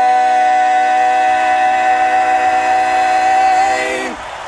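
Barbershop quartet of male voices holding one long, steady final chord a cappella, cut off together at the end.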